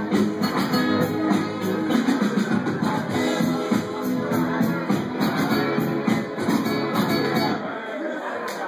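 Band music with electric or acoustic guitar playing over a steady drum beat, no vocals.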